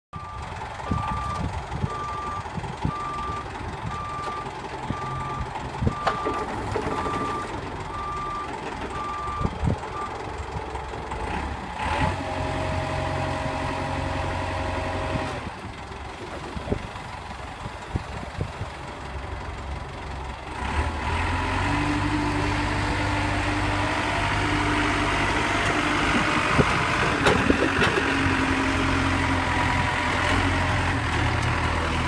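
Manitou MC70 Turbo rough-terrain forklift's diesel engine running, its reversing alarm beeping at an even pace for about the first ten seconds. A steady whine joins the engine from about twelve to fifteen seconds in, and the engine runs louder through the last third.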